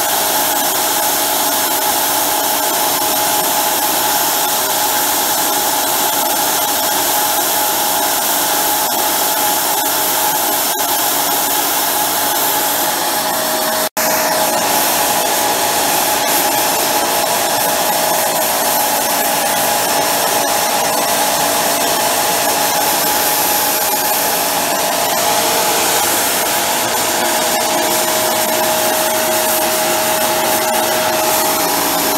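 Small high-intensity gas micro burner running full, its tube glowing red-hot: a loud, steady rushing jet noise with a steady whistle-like tone in it. The sound breaks off for an instant about halfway through, then carries on.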